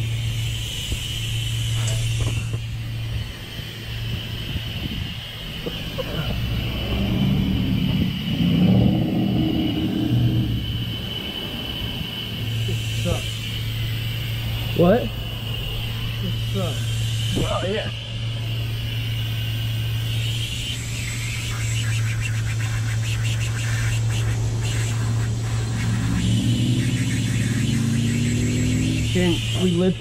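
A steady low engine hum under muffled, indistinct voices, with a few short rising squeaks near the middle.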